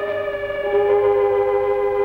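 Background film music: sustained held organ chords, changing to a new chord about half a second in.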